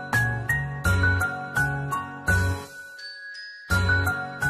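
Bright instrumental children's music with bell-like, tinkling notes over a bouncy bass line. About two-thirds of the way in, the beat drops out for a short sparkling shimmer and a couple of ringing chime tones, then the tune starts again near the end.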